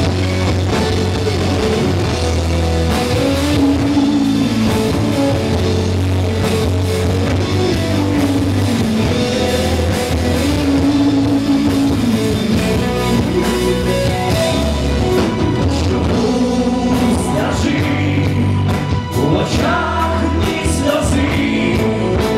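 Live rock band playing, with electric guitars, bass and drums under sung vocals.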